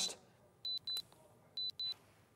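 High-pitched electronic beeps at a single pitch, in two quick pairs about a second apart.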